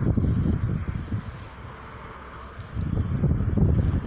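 Wind buffeting a phone's microphone outdoors: an irregular low rumble that eases off for about a second and a half in the middle, then gusts again.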